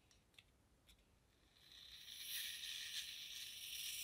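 A can of Loctite gap and crack filler expanding foam spraying through its straw nozzle into a small glass mug: a faint, steady, high-pitched hiss that starts about a second and a half in, after a couple of light clicks.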